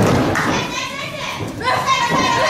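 High-pitched voices shouting and calling out in a hall during a wrestling pin attempt, with a thud of bodies hitting the ring mat at the start and again near the end.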